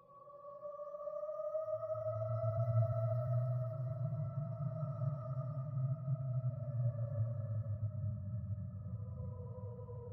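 Creepy horror ambience sound effect: a held tone with a fainter one an octave above, fading in, rising slightly and then slowly sinking in pitch, over a low rumble that swells up about a second and a half in.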